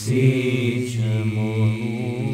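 Male a cappella choir singing a devotional song in harmony, holding long sustained notes over a low bass line, with a sung 's' consonant about a second in.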